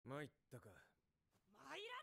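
Only speech: a man's voice says a short line, then about halfway through a child's voice shouts with rising pitch.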